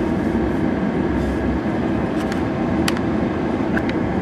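Steady low rumble and hum of a car at idle, heard from inside its closed cabin, with a few light clicks in the second half.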